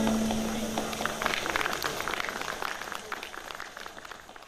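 The last held note of the song's music dies away, then an audience applauds with irregular claps, the sound fading out.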